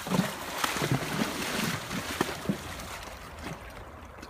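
A horse pawing at shallow creek water with a front hoof: a run of splashes, about three a second, that die away in the second half.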